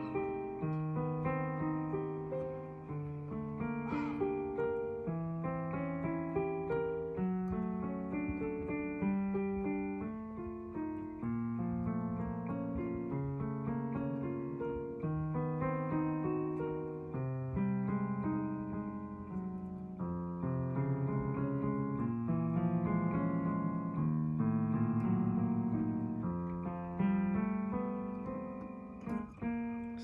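Yamaha digital piano playing the left-hand part alone: a steady succession of single low notes and broken chords, one after another, in the piece's bass line from bar 19 on.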